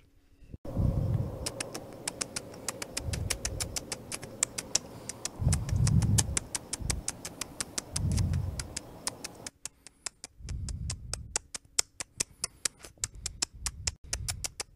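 Cartoon nibbling sound effect: fast, even clicks, about four a second, over a low rumbling noise that swells and fades several times and cuts off suddenly about nine and a half seconds in, leaving the clicks going on their own.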